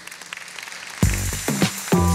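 Audience applause, then electronic outro music with a heavy beat starts about a second in.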